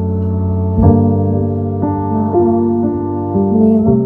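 Keyboard playing a slow intro of held chords, the chords changing about every second.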